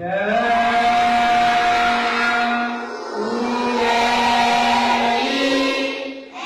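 Many children's voices chanting a Buddhist devotional recitation in unison, in long phrases held on a steady pitch, with a short break about halfway through.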